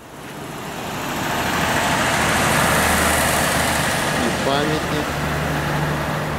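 Road traffic: a car's engine and tyre noise growing over the first two seconds, then holding loud and steady with a low engine hum underneath.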